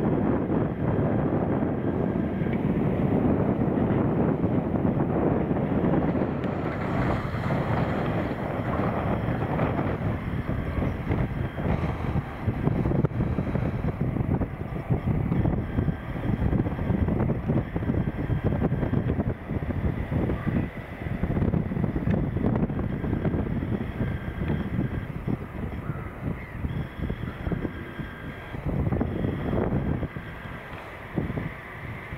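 Farm tractors pulling silage trailers across a field, their engines a steady low rumble with wind buffeting the microphone. Short bird calls come through faintly in the second half.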